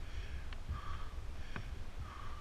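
A time-trial cyclist breathing hard and rhythmically, about three quick breaths, under a steady low wind rumble on the bike-mounted camera's microphone. Two sharp clicks come about half a second and a second and a half in.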